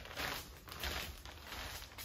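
Footsteps on clear plastic protective sheeting laid over the floor, the plastic crinkling and rustling softly and unevenly with each step.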